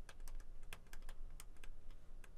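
Pen stylus tapping and clicking on a tablet surface while handwriting, a quick irregular run of light clicks, about six a second.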